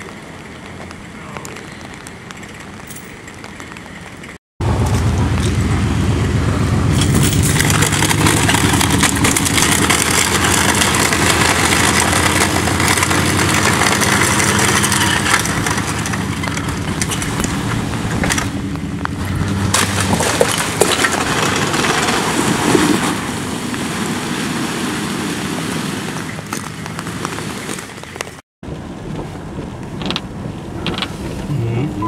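Pickup truck engine running as it drags a fallen wooden utility pole by a chain along the pavement, with a long scraping of the pole on the road. The sound comes in suddenly after a brief drop-out about four seconds in and stops with another drop-out near the end.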